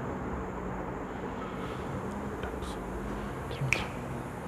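Room tone: a steady low hum with background noise, a few faint ticks, and one short click near the end.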